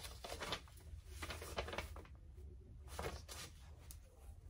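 Soft rustling of paper pattern pieces and fabric being handled on a table, three brief scrapes over a low steady hum.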